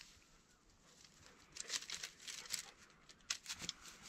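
Faint rustling and crackling of dry grass and sagebrush being pushed through, in scattered short bursts that start about a second and a half in.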